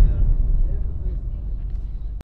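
The fading tail of a deep cinematic boom sound effect: a low rumble that slowly dies away.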